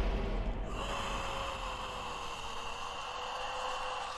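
Trailer sound design: the low rumble left by a heavy hit dies away, and about a second in a steady, eerie held drone tone comes in over a faint hiss, fading out near the end.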